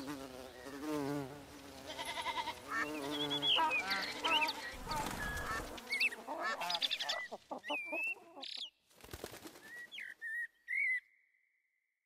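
A run of animal-like calls: wavering honks and cries at first, then short high chirps and whistles, ending in a held high whistle that fades out.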